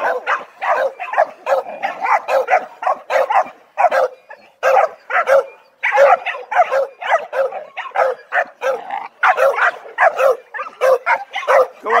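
A dog barking over and over in fast, high-pitched yapping barks, about two or three a second, with two short breaks midway.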